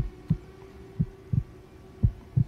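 Heartbeat sound effect: slow double thumps, each pair about a second after the last, over a faint steady low drone.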